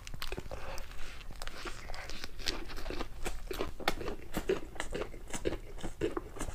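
Close-miked chewing of a mouthful of lettuce wrap: crisp crunching and wet mouth clicks, coming irregularly several times a second.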